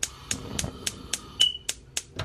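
Gas hob burner's electric spark igniter ticking repeatedly, about four sharp clicks a second, as the burner is lit.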